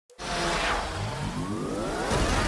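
Animated-intro sound effects of flying machines revving up: several whines rising steadily in pitch over a rushing noise, starting suddenly just after the opening silence.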